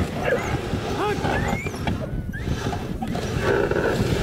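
Greenland sled dogs whining and yelping in short rising calls, mostly in the first two seconds, over a steady low rumble of the sled moving on the snow.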